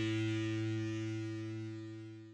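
The last chord of a punk song held on distorted electric guitar, ringing out and steadily fading away.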